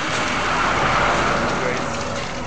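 A motor vehicle driving past on the road, its noise swelling to a peak about a second in and then fading away.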